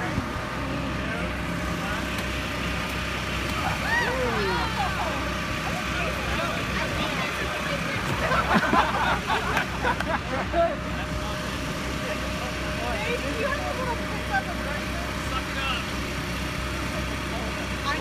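Steady drone of the air blower motor that keeps an inflatable jousting arena inflated, with voices over it around 4 seconds in and again from about 8 to 10 seconds in.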